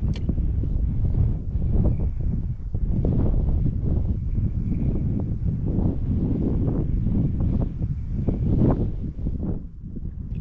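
Strong wind buffeting the microphone: a loud, uneven, low rumble.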